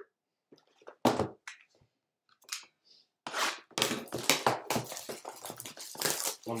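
Cardboard hobby boxes being handled and set down on a table. A sharp knock comes about a second in, then from about three seconds in a busy run of rustling, sliding and bumping.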